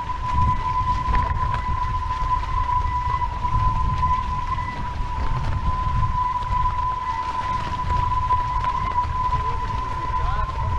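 Wind buffeting a boat-mounted camera's microphone and water rushing past the hulls of a sailing catamaran under way, with a steady high whine running throughout.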